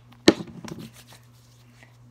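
A plastic lotion bottle squeezed, with lotion spurting out onto a palm in one short, sharp squirt about a quarter second in, followed by a few soft sticky sounds of hands spreading the lotion for about half a second.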